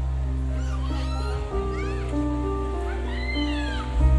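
Live band playing an instrumental introduction: held chords over a steady bass, with three high sliding notes that rise and fall above them.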